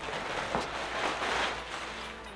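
Clear plastic packaging bag rustling and crinkling steadily as a pair of denim shorts is pulled out of it.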